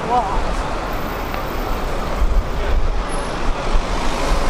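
City street traffic: cars passing close by with engine rumble and tyre noise that swells in the second half, under the chatter of a crowd of pedestrians. A short wavering voice cuts through just after the start.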